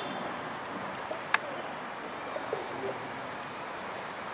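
Domestic pigeons cooing softly over faint background hum, with a single sharp click about a second and a half in.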